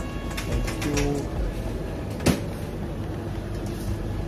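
Shop room ambience: a steady low hum with a faint short tone about a second in and one sharp click a little after two seconds.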